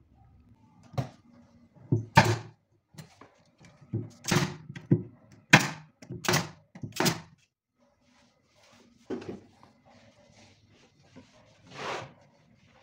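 Brad nailer firing brads into a plywood subwoofer enclosure: a string of sharp shots, most of them between about two and seven seconds in, with fainter knocks after.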